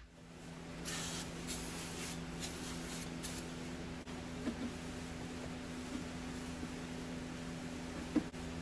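Aerosol can of brake cleaner sprayed in about five short hissing bursts onto a welded steel frame body mount, cleaning it before coating. A steady low hum runs underneath.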